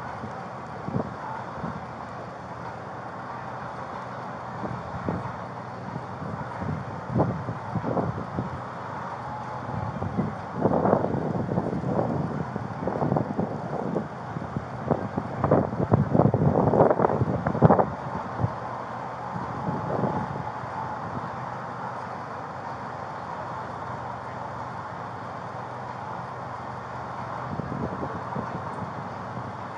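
Street background of idling vehicles with wind and rubbing on a body-worn camera's microphone. There is a stretch of louder, irregular rustling and buffeting from about 10 to 18 seconds in.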